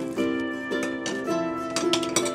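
Instrumental background music of plucked strings, its notes ringing on in steady held tones.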